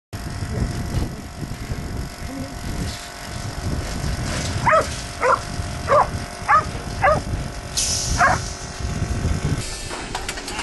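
A dog barking six times, short sharp barks roughly half a second to a second apart, over steady low background rumble.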